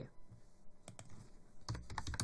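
Computer keyboard typing: a few isolated key clicks, then a quick run of keystrokes starting near the end.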